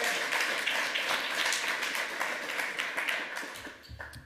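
Audience applauding, many hands clapping at once, fading out near the end.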